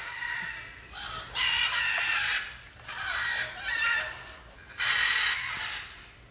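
Macaws squawking: four harsh, rasping calls of about a second each.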